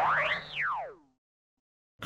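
Logo-intro sound effect: a whistle-like tone that glides up, peaks about half a second in, then slides back down and fades out by about one second in.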